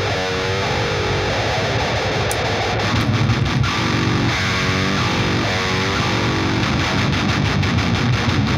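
Heavy, distorted electric rhythm guitar riff played back through the MLC SubZero amp-simulator plugin, with chords that shift in pitch.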